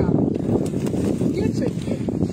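Several people talking at once outdoors, overlapping voices without clear words.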